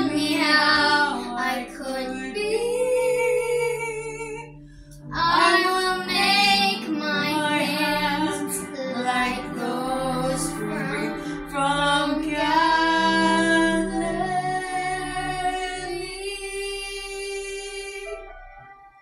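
A girl and a woman singing a slow song together as a duet, in phrases with a short breath about four and a half seconds in, ending on a long held note that fades away near the end.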